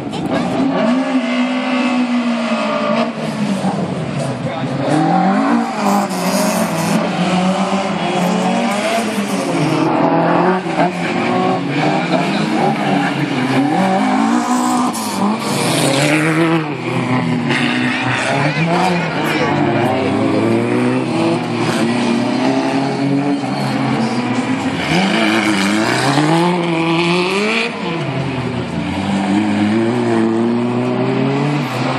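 Small rally hatchback's engine revving hard and dropping back over and over as it is driven through tight turns, with stretches of tyre squeal.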